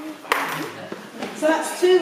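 People's voices talking, with one sharp knock about a third of a second in.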